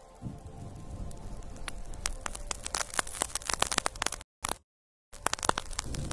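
Fingers with long acrylic nails scratching and rubbing a fluffy fur microphone windscreen right at the microphone, making dense crackling clicks that grow thicker about two seconds in. The sound cuts out completely for about a second a little past the four-second mark, then the crackling resumes.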